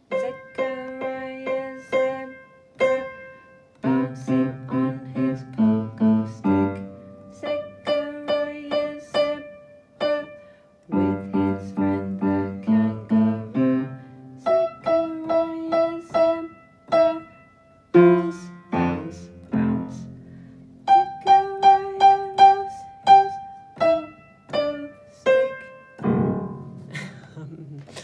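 Upright piano played with both hands: a short beginner's piece of repeated, bouncing single notes over left-hand bass notes, with a few brief pauses between phrases. It ends a couple of seconds before the end.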